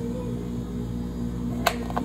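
Two sharp plastic clicks near the end as a dome lid is pressed onto a plastic drink cup, over steady background music.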